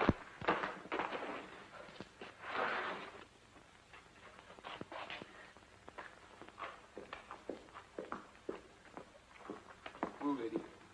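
Scuffling and scraping on the ground: a few rough scrapes in the first three seconds, then scattered light knocks and steps.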